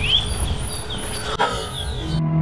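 Birds calling in open parkland: repeated short rising chirps and a high note repeated at even intervals, over low wind rumble on the microphone. About one and a half seconds in the sound breaks off abruptly and a brief pitched call follows.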